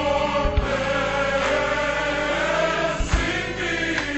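Slowed-down gospel song: a choir holding long notes over a bass line, with low drum hits about half a second in and again near three seconds.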